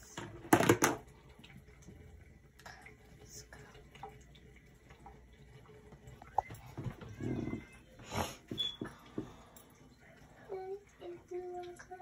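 Brief rustles and scrapes of hair being combed and gathered by hand, the loudest about half a second in and again around eight seconds. Near the end a little girl hums a tune in long held notes.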